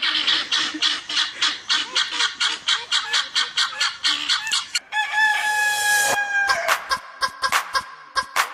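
Hens clucking rapidly, about seven clucks a second, broken about five seconds in by one long drawn-out call that falls slightly in pitch before the clucking resumes.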